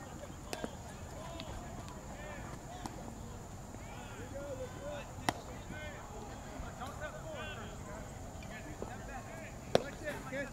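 Distant voices of players calling across a baseball field, with a few sharp knocks of ball play: a pair about half a second in, one in the middle, and the loudest just before the end.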